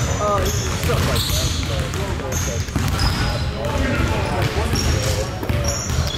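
Basketballs bouncing on a hardwood gym floor, with short high squeaks of sneakers on the court and indistinct voices in the background, all echoing in a large hall.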